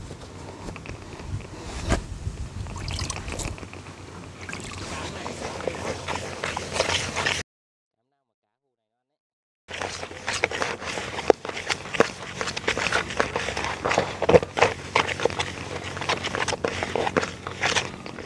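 Hands mixing and kneading damp fishing groundbait in a plastic basin: crumbly squishing and rustling, with scraping against the basin and many small clicks. The sound drops out to dead silence for about two seconds near the middle.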